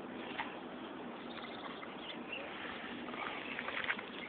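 Low, steady background hiss with a few faint soft clicks from the fish being handled.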